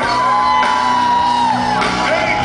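Live band music played loud in a hall, with a singer holding one long high note that drops off about a second and a half in.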